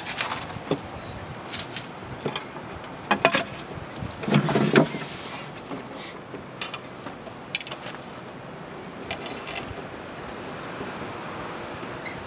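Scattered clicks, knocks and scrapes of metal paint tins and a metal snake hook being shifted about on a dirt floor, with a louder scuffle about four seconds in.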